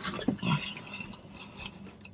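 A man chewing a mouthful of chewy pizza with his mouth closed: faint, irregular soft chewing sounds, a little stronger in the first second.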